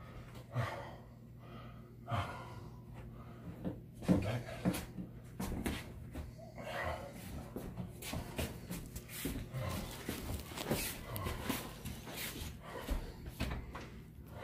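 Two men breathing hard and grunting with effort as they carry a heavy wooden aquarium stand, with short knocks and bumps from the cabinet as it is moved.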